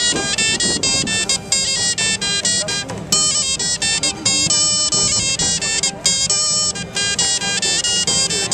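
A medieval folk band playing a quick tune: a wooden pipe leads the melody in fast-changing notes over the beat of a large drum, with a bowed fiddle and a plucked lute.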